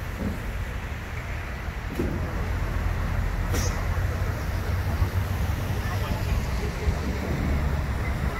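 Outdoor background noise: a steady low rumble with faint voices of people nearby and a couple of brief clicks.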